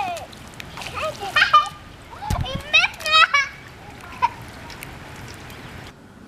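Barefoot children kicking and splashing water on a wet road in steady rain, with a few short high-pitched children's shouts over the hiss of the rain.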